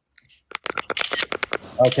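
A quick run of sharp clicks and rustles, about a second long, from something being handled close to the microphone.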